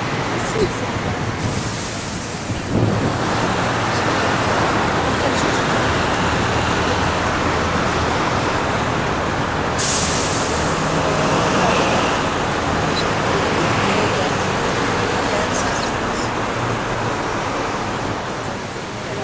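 Street traffic and a bus engine running, heard from a moving city tour bus, with a short sharp hiss about ten seconds in.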